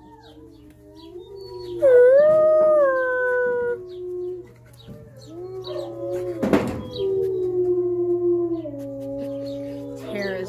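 Wolves howling in long, drawn-out calls that slowly fall in pitch: one howl about two seconds in, then overlapping howls at two pitches from about six seconds on. A short, loud scuff about six and a half seconds in, as the dog's fur brushes the phone.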